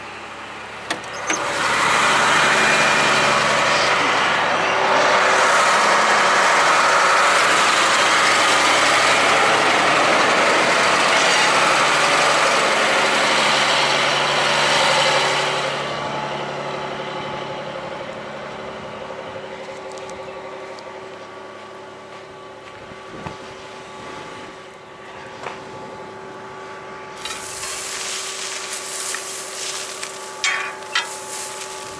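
John Deere tractor's engine running. A loud, even rushing noise lies over it for the first half, then drops away and leaves a steady engine hum. A rustling noise rises near the end.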